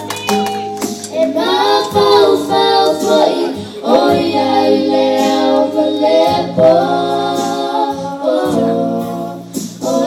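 A group of young girls singing together into microphones, over steady low held notes in the accompaniment.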